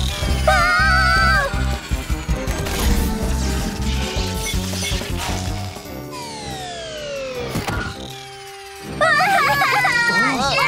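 Cartoon soundtrack: dramatic background music, then a falling whistle that ends in a thud a little past the middle, followed by shrill cries near the end.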